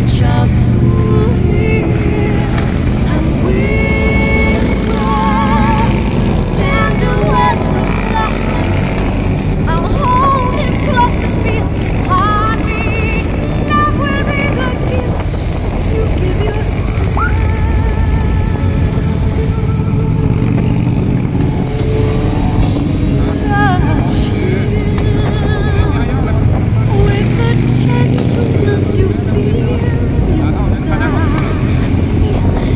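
A song with a singing voice plays over the steady low rumble and wind noise of riding in a group of motorcycles.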